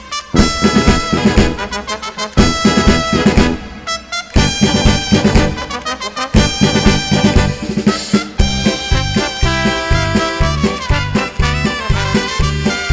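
Paso doble music with brass over a strong marching beat. It breaks off briefly about four seconds in, then picks up again.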